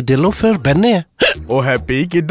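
A man's voice in comic voice acting: a run of short vocal sounds, each rising and falling in pitch, with a brief pause about a second in.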